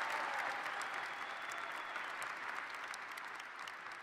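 Large audience applauding, slowly dying away.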